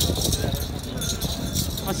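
Small metal bells on a bull's leg bands jingling as it walks, over a steady murmur of background voices.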